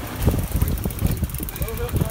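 Wind buffeting the microphone on an open boat, an uneven low rumble, with a brief voice near the end.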